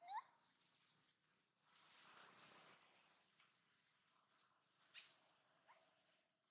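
Bird calls: a string of high, thin whistles, several sweeping sharply up in pitch and one long call sliding slowly down through the middle.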